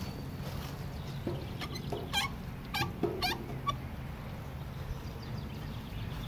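About four short, wavering high-pitched animal calls in quick succession, roughly two to three and a half seconds in, over a steady low hum.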